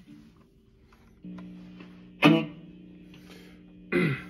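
Double-cut Firefly electric guitar played through a Monoprice Stage Right amp and Line 6 POD: a chord starts ringing about a second in, then is struck hard twice, once past halfway and again at the end, each time left to sustain.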